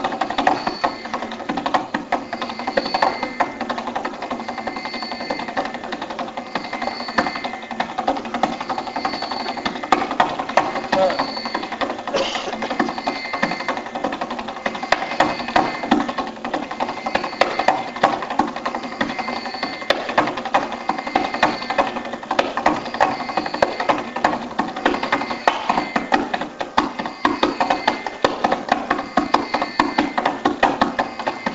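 Carnatic classical concert music: a male voice singing over fast, dense mridangam strokes.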